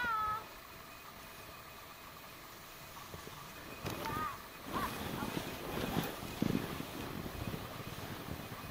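A short high-pitched call at the start and another about four seconds in, like distant children calling out. From about halfway, irregular crunching and scraping in snow as the rider moves through it.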